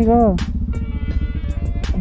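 Motorcycle engine idling with a steady low rumble. A drawn-out voice over it ends about half a second in.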